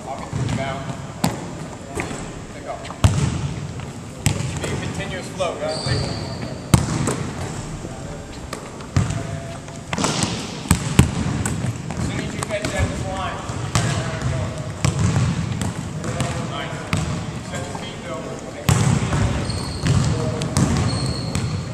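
Basketballs bouncing on a hardwood gym floor, a run of irregular sharp thuds, the loudest a few seconds in and again around the middle. Several voices chatter under the bounces.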